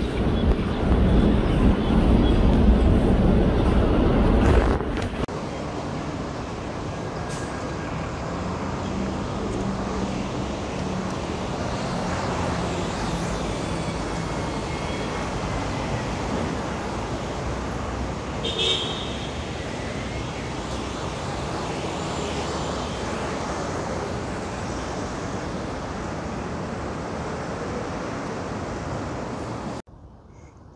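Urban street ambience of steady distant traffic noise. A louder low rumble fills the first five seconds and drops off suddenly at a cut, leaving a steadier, quieter hum with a few faint high chirps.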